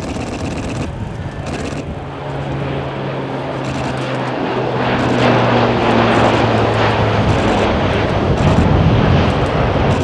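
Lockheed C-130J Super Hercules flying past, the drone of its four turboprop engines and propellers growing louder and peaking in the second half. The propeller hum drops slightly in pitch a little past the middle as the aircraft goes by.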